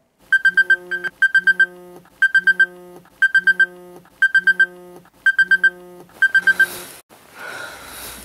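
Smartphone alarm tone: a phrase of four or five quick high beeps over a lower tone, repeated seven times about a second apart, then stopping. A rustle follows near the end.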